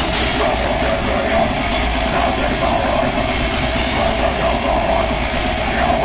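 Death metal band playing live at full volume: heavily distorted electric guitars over a drum kit, with a dense stream of fast drum and cymbal hits.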